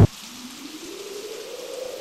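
The beat-driven soundtrack music drops out abruptly, leaving a soft electronic hiss with one faint tone that slowly rises in pitch.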